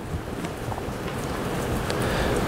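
Room noise: a steady low rumble and hiss with a few faint clicks.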